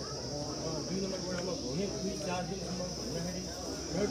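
Steady high-pitched insect chorus running without a break, with several people talking in the background underneath.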